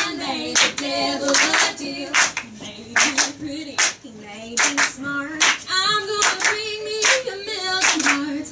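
Women's voices singing together with hand claps keeping a steady beat about twice a second.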